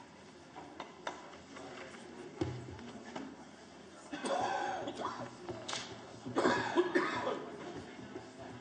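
Indistinct voices in the background, loudest about halfway through and again near the end, with a few small knocks and clicks early on.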